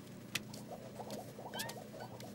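Quiet cartoon sound effect of a small child's bare feet tiptoeing: a run of light, quick pattering plinks. There is a single click early on and a few short rising squeaks in the second half.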